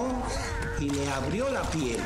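A man talking in a language other than English.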